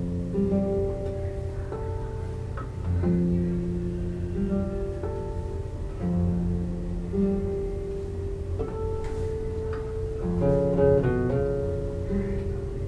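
Two classical guitars playing together: held notes over a slower bass line, with a quick run of notes near the end.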